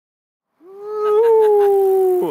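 A person's long, drawn-out howling yell, starting just over half a second in, held loud on one pitch and sagging slightly.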